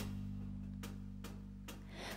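Live band accompaniment between vocal lines: a held chord rings and slowly fades, with a few soft taps.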